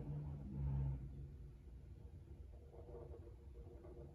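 Faint scratch of a black felt-tip marker drawing a circle on paper, over a low room hum that fades about a second in.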